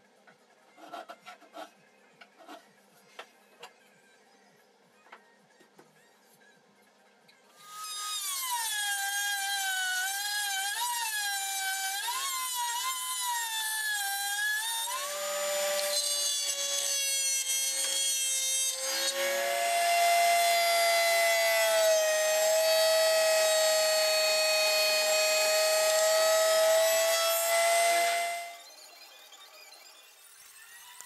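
A few faint clicks and scrapes of a shoulder plane paring a cherry tenon shoulder, then a table-mounted router runs for about twenty seconds, its whine wavering and dipping in pitch as cherry door-frame stock is fed past the bit to cut a rebate, then holding a steadier, higher note before cutting off near the end.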